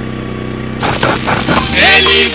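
A steady electrical hum, then loud music suddenly starts through the DJ's sound system a little under a second in: sharp percussive hits first, with a wavering melody coming in near the end.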